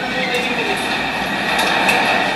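Steady hiss and hum of raw, noisy room audio from a hand-held camera, with faint muffled voices underneath.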